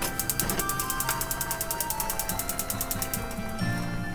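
Gas hob burner's spark igniter clicking rapidly and evenly, about a dozen clicks a second for some three seconds, then stopping as the burner lights.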